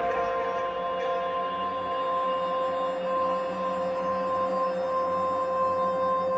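Outro of a hip-hop remix with the beat gone: one steady held tone, its upper hiss fading away over the first couple of seconds.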